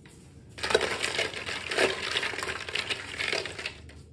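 Hollow plastic ball-pit balls clattering into a porcelain toilet bowl and against one another: a dense rattle of many small hits that starts about half a second in and lasts about three seconds.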